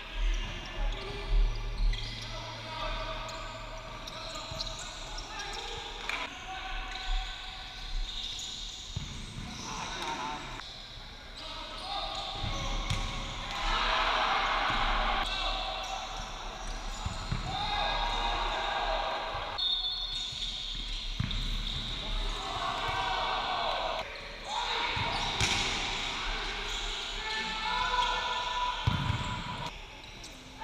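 Futsal ball kicked and bouncing on a hard indoor court, a scatter of sharp thuds, over players and spectators shouting in the sports hall.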